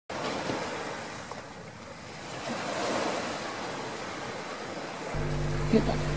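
Ocean surf washing in, a rushing sound that swells and ebbs, loudest about three seconds in. A steady low hum comes in about five seconds in.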